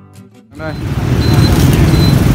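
Strummed acoustic guitar music, about four strums a second, ends about half a second in and is cut off by loud outdoor street noise: a dense low rumble with people talking over it.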